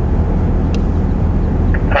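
Steady low rumble inside the cab of a 2007 Dodge Ram 3500 pickup with its turbo Cummins diesel running.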